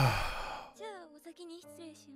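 A man's loud, breathy sigh that fades away in under a second. After it a girl's voice from the anime speaks over soft sustained background music.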